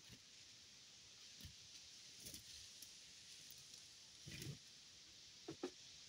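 Faint knocks and light clatter of hand tools and lumber being handled on a wooden work platform, a few scattered taps with two sharper knocks near the end, over a steady background hiss.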